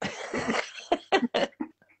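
A person coughing: one harsh cough right at the start, then several shorter coughs over the next second.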